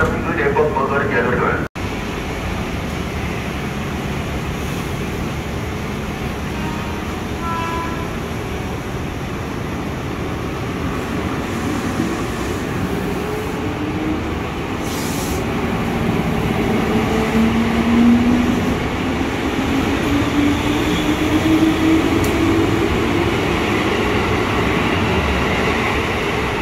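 Electric commuter train pulling away from a station platform: a steady rumble of wheels on rails, with the traction motors' whine rising slowly in pitch over the second half as the train picks up speed. A voice is heard briefly at the very start.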